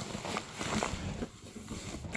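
Cardboard box and packaging being handled: irregular rustling with a few soft knocks.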